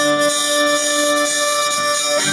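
Hurdy-gurdy playing a folk tune over its steady, bagpipe-like drone.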